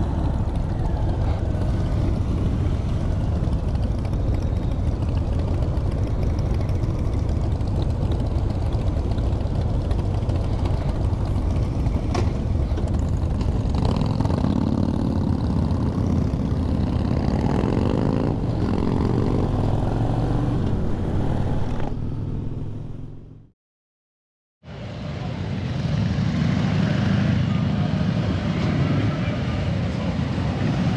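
Cruiser motorcycle engine running on the road with wind noise on the microphone, rising in pitch as the bike accelerates in the middle. The sound fades out briefly about three-quarters through, then motorcycle engines are heard close by at low speed.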